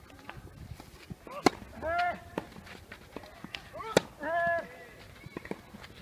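Tennis ball struck hard with a racket twice, about two and a half seconds apart, on a clay court. Each sharp hit is followed by a short vocal cry from a player.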